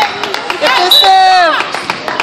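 Volleyball gym sounds: a string of sharp knocks from a ball hitting and bouncing on the hard court, ringing in the hall, and a loud shout held for about half a second just past the middle, dropping in pitch as it ends.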